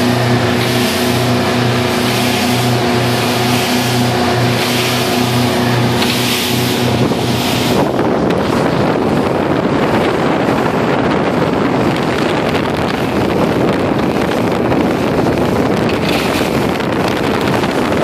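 Motorboat under way at speed, around 27 mph: a steady engine drone with a pulsing low hum. About eight seconds in, the engine tones drop back and a loud rush of wind and water past the hull takes over.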